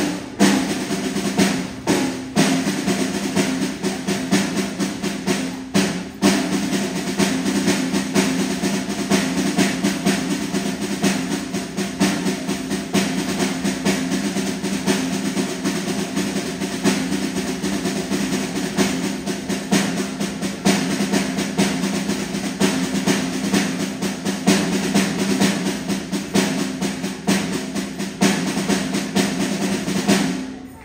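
Snare drum solo: a dense, unbroken stream of rapid strokes and rolls with occasional louder accents. It stops abruptly at the very end.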